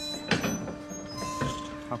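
Steady low electric hum from the drive of a canal lock's wooden gates as they close, with two short loud bursts of nearby voices.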